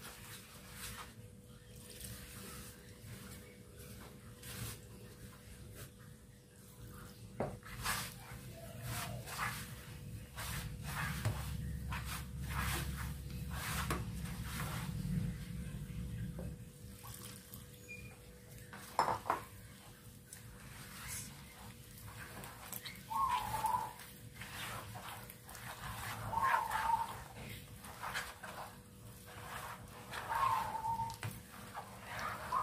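A hand mixing and kneading rice flour with coconut milk in a plastic bowl: scattered soft clicks and squelches as the dough turns into batter. A low rumble comes in for a few seconds in the middle, and a few short chirps sound near the end.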